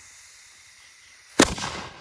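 Single-shot aerial firework: the fuse hisses steadily, then about one and a half seconds in there is one loud, sharp bang as the shell is launched, with a short echoing tail.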